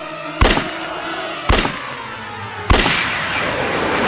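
Three pistol shots, a little over a second apart, each with a short ringing tail. After the third, music swells up.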